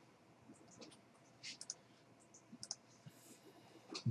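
Near silence with a few faint, scattered clicks from a computer mouse.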